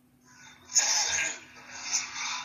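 A person's breathy vocal sound, starting a little under a second in and lasting about a second.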